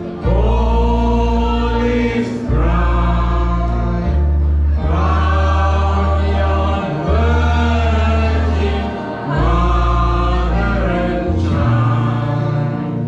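A mixed group of men and women singing together into microphones over amplified backing music, with a bass line that changes note about every two seconds.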